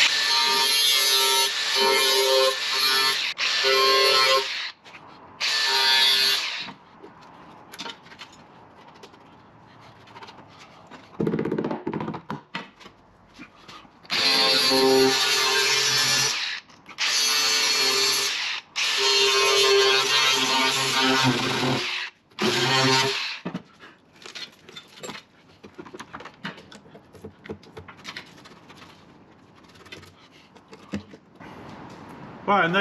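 Angle grinder cutting into the rusty steel sill of a Ford Transit van. It gives a high, steady whine in about eight bursts of one to three seconds each, with quiet pauses between.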